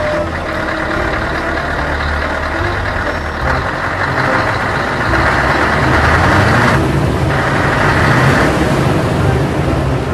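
A heavy vehicle's engine sound running steadily, a little louder from about four seconds in.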